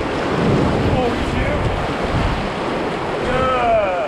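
Whitewater rapids on the Arkansas River rushing and churning loudly around an inflatable raft as it runs the rapid.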